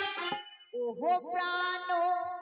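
The band's music breaks off, leaving a brief high metallic ringing tone. About a second in, a singer's voice comes in through the microphone and PA, sliding up into a long held note.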